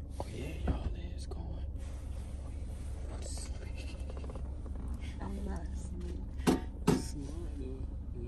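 Steady low rumble inside a car's cabin under quiet murmured voices, with two sharp knocks close together near the end.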